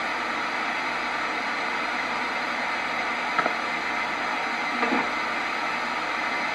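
Spirit box radio scanning through stations, giving a steady hiss of static, with a couple of brief faint snatches of sound about three and a half and five seconds in.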